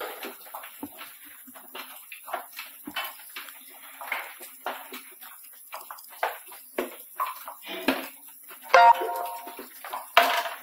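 Gloved hands and boots knocking and scraping on the rungs of a metal ladder during a climb down, in an irregular series of clanks. The loudest clank comes about nine seconds in and rings briefly.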